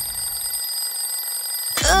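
Twin-bell alarm clock ringing, a rapid, steady, high-pitched bell that cuts off suddenly near the end as it is switched off by hand.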